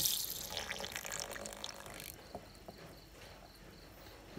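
Water fizzing and churning as a submerged LED headlight bulb's brushless cooling fan spins in a bowl of water, stirring up bubbles. It dies down after about two seconds.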